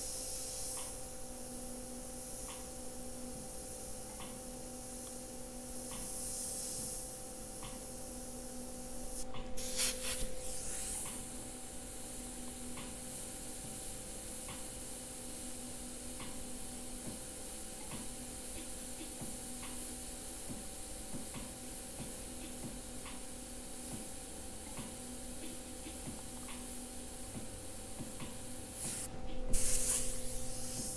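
Airbrush spraying paint in soft, intermittent hisses, with two louder bursts of air, one about ten seconds in and one near the end. A steady hum and faint regular ticking run underneath.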